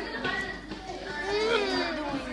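Children's voices chattering in the background of a classroom, with one child's voice clearest in the second half.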